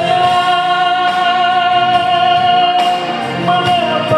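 A man singing a solo through a microphone and PA over instrumental accompaniment, holding one long note for nearly four seconds.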